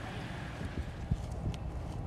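Footsteps on a paved surface, a few steps about two a second, over a steady low rumble.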